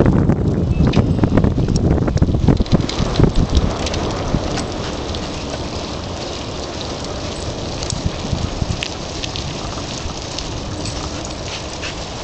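Bicycle tyres rolling on an asphalt path, with wind buffeting the microphone. It is heavier and gustier in the first few seconds, then settles to a steadier hiss with scattered small clicks and rattles.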